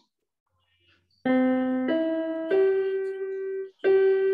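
Digital keyboard with a piano voice playing three slow single notes that climb one after another, the last held, starting about a second in.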